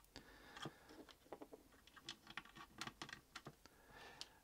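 Faint, scattered light clicks and scratches of small plastic model-kit parts (tank suspension swing arms) being handled and set down on a cutting mat.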